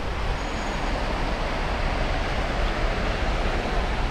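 Steady rushing noise of sea surf and wind, with a low rumble of wind on the microphone.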